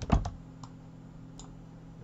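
A few quick clicks from a computer keyboard and mouse, one louder than the rest, then two faint clicks, over a faint steady low hum.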